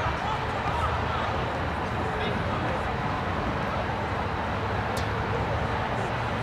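Faint, distant shouts of players and spectators at an outdoor soccer match over a steady low background rumble, with one sharp click about five seconds in.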